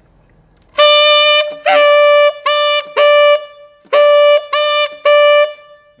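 Tenor saxophone with a metal mouthpiece playing seven short notes at one steady pitch, written E (concert D). The player is moving between the palm-key E and the overblown low E flat fingering for the same note.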